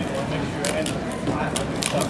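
Sharp plastic clacks as a Master Magic folding puzzle's panels are flipped during a timed speed solve, a few irregular clicks over steady crowd chatter in the hall.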